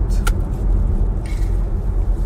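Steady low rumble of road and engine noise heard inside a car's cabin.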